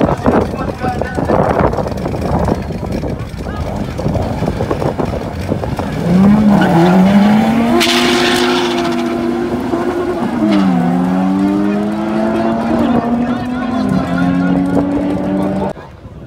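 Drag-race cars at the start line, then pulling away hard: the engine note climbs from about six seconds in, with a sharp burst of noise around eight seconds. The pitch then drops and climbs again as a gear is changed, and the sound cuts off suddenly near the end.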